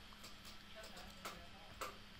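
A few faint, sharp computer mouse clicks over a low steady electrical hum, the clearest near the end.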